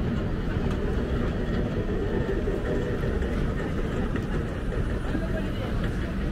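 Busy city street ambience: a steady rumble of traffic with indistinct voices of passers-by.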